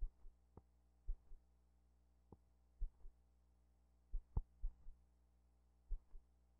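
Blank film soundtrack of archival news footage shot silent: a faint steady hum broken by about a dozen irregular short low pops and thumps, the loudest about four seconds in.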